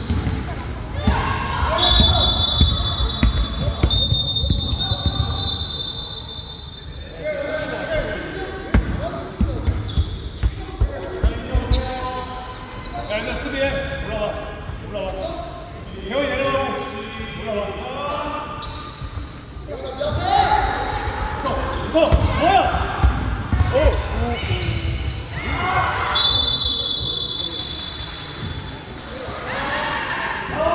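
Basketball bouncing on a wooden gym floor during a youth game, with voices calling out in the echoing hall. A referee's whistle sounds twice, about two seconds in and again near the end.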